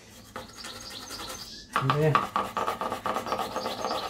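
Stiff nylon brush scrubbing a bicycle's front derailleur cage and chainring wet with degreaser: bristles rubbing on metal in quick strokes.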